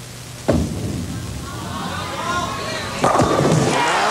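A bowling ball is laid onto the wooden lane about half a second in and rolls down it, then crashes into the pins for a strike about three seconds in. The crowd cheers as the ball nears the pins and after the hit.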